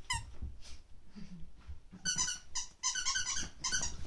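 A squeaky dog toy squeaking as a small dog chews it: one short squeak at the start, then quick runs of squeaks through the second half.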